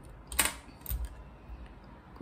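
A few light clicks and knocks of painting tools being handled on the table, the sharpest about half a second in and another about a second in.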